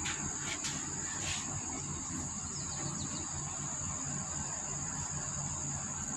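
Steady high-pitched insect trilling over a low background rumble, with a few faint clicks in the first second and a half.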